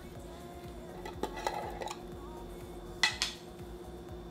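Screw-on lid of a jar being twisted open by hand, stuck because it was closed too tight: faint scrapes and clicks, then one short, louder scrape about three seconds in.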